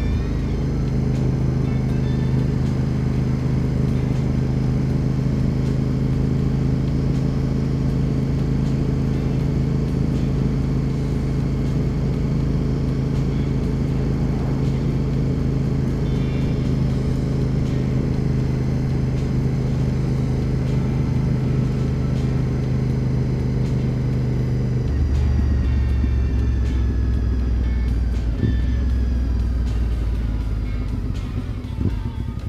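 Honda RC51 (RVT1000R) 1000cc V-twin engine running steadily at cruising speed on the road. About 25 seconds in, its note drops lower and the pitch falls as the bike slows.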